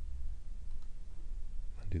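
A few faint computer mouse clicks over a steady low hum, then a man starts speaking near the end.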